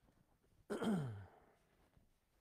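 A man coughs once, about a second in, the sound falling in pitch as it dies away.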